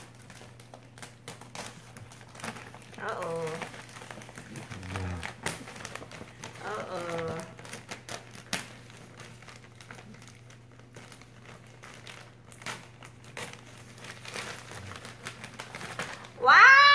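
Christmas wrapping paper crinkling as a gift is unwrapped by hand, in many small irregular crackles.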